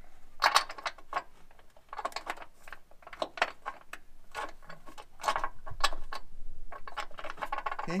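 Irregular bursts of small metallic clicks and rattles from a hitch bolt and its fish wire being handled at a hole in the car's frame rail, as a wooden clothespin is clipped onto the bolt.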